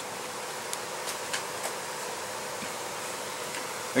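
Steady background hiss with a faint steady hum, and a few faint light ticks in the first two seconds as a micrometer and notebook are handled.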